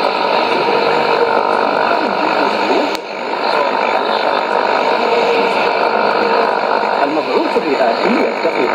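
Shortwave AM reception of KBS World Radio's Arabic service on 13585 kHz through a Sony ICF-2001D receiver: a steady rush of static and hiss with weak, hard-to-make-out Arabic speech beneath it. A single sharp crackle about three seconds in.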